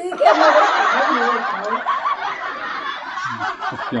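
A woman laughing heartily for about three seconds, with a man's voice near the end.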